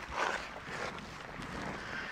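Fingers brushing fairly dry potting mix off the side of a tree's root ball: a soft, scratchy rustle, loudest briefly just after the start.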